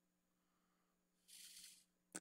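Near silence with a faint low hum; past the middle comes one brief, soft scratch of a graphite pencil shading on paper.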